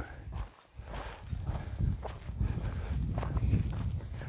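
Footsteps of a hiker walking on a dry dirt path.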